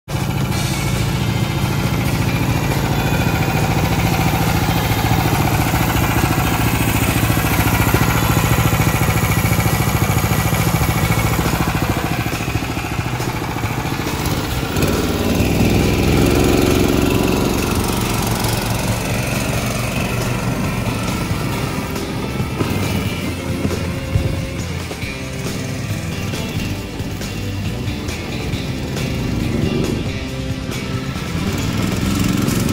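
Predator 301 cc single-cylinder petrol engine running on a converted mobility scooter as it is ridden, with background music over it.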